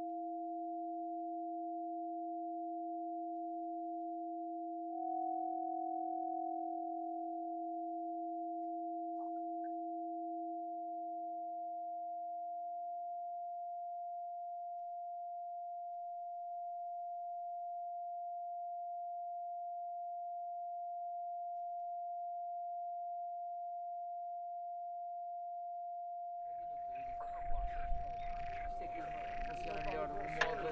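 Two steady pure electronic tones from a film soundtrack: a higher tone held throughout and a lower one that fades out about a third of the way in, with a brief rising chirp at about nine seconds. A noisier, irregular sound comes in near the end.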